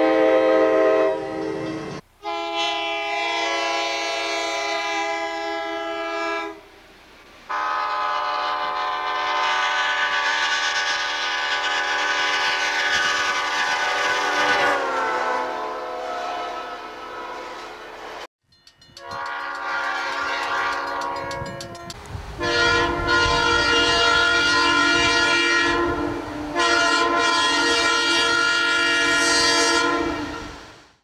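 Nathan chime air horns on Long Island Rail Road cab cars, heard as a string of separate horn blasts cut together: a Nathan K5LA five-chime horn first, then Nathan P5A horns, one falling in pitch as the train passes about fifteen seconds in. In the last third the low rumble of the passing train runs under the blasts, the last of which come from a Nathan M3RT1 three-chime horn.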